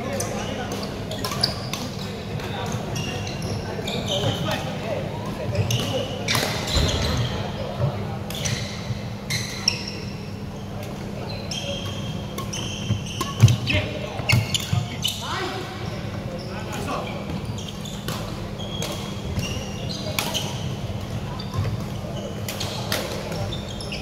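Badminton play echoing in a large sports hall: sharp, irregular clicks of rackets striking shuttlecocks, short high squeaks of court shoes on the wooden floor, and a background murmur of many voices. The loudest hits come about halfway through.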